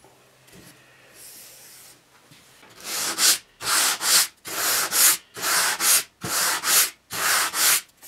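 Hand sanding block rubbed back and forth along a walnut board, a run of even strokes about one every 0.7 s starting about three seconds in.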